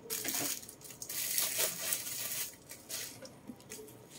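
A thin clear plastic bag crinkling and rustling as it is handled, in a long run over the first two and a half seconds, then a few short rustles.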